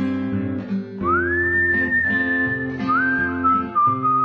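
Acoustic guitar picking a steady accompaniment under a whistled melody: about a second in the whistle slides up into a long held note, then moves to a few lower held notes.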